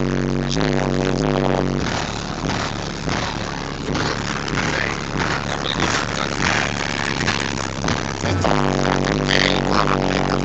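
Loud rap music with heavy bass played through a bubble-body Chevy Caprice's car stereo system. The deep bass drops away from about two seconds in, leaving a rougher, noisier sound, and comes back strongly near the end.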